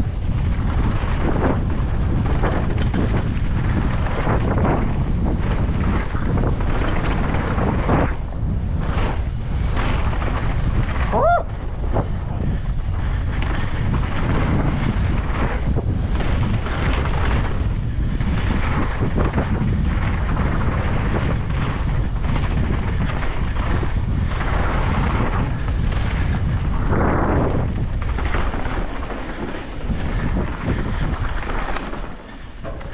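Wind rushing over the helmet camera's microphone, with mountain bike tyres rolling over dirt singletrack on a fast descent. A brief rising squeak cuts through about a third of the way in.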